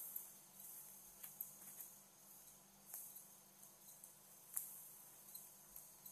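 Near silence: low room tone with a few faint, light clicks scattered through it.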